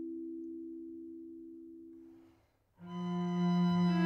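Chamber ensemble music: a held two-note chord fades away slowly and dies out about two and a half seconds in. After a brief silence, a sustained bowed-string chord with a strong low cello note swells in.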